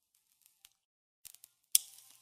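A few short, sharp clicks over near silence: one faint, then a quick little cluster, then a sharper one near the end.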